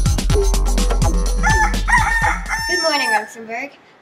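Intro music with a steady drum beat, which cuts off about three seconds in. Over its last part a rooster crows one long cock-a-doodle-doo, held and then falling away at the end.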